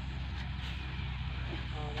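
Massey Ferguson 240 tractor's three-cylinder diesel engine running steadily.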